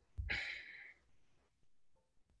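A man's short breathy sigh, starting about a quarter second in and fading out within the second.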